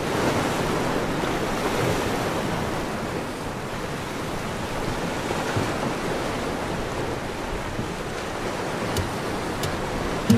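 A steady rushing noise, surf-like, fading in at the start, with a couple of faint clicks near the end.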